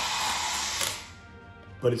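Motorized retractable toy lightsaber drawing its nesting plastic tube blade back into the hilt, a steady whirring hiss that fades out about a second in.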